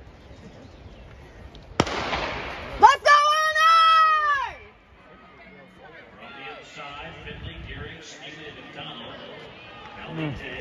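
A starting gun fires about two seconds in, sending off a women's 800 m race, with a short rush of noise after it. A second later a nearby spectator gives a loud, long, high-pitched yell that rises and then falls in pitch, and fainter crowd cheering follows.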